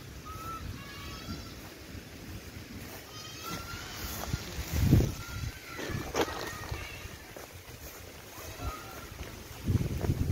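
Wind rumbling on the microphone of a handheld camera carried outdoors, with two loud gusts, about five seconds in and again at the end. Short high chirping notes sound now and then.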